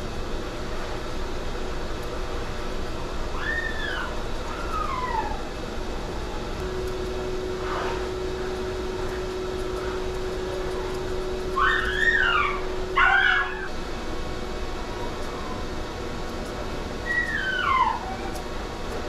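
Small dog, a Shih Tzu, whining in short, high whines that rise and fall in pitch: two around four seconds in, a louder cluster about twelve to thirteen seconds in, and one falling whine near the end, over a steady background hum.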